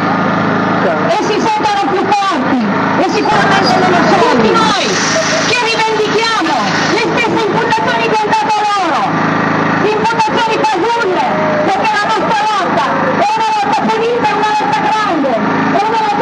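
A woman's voice through a microphone and loudspeaker, speaking continuously, over the steady hum of a portable petrol generator.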